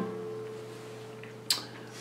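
The last chord of a flamenco guitar falseta rings out faintly and fades after the playing stops. A single short, sharp click comes about one and a half seconds in.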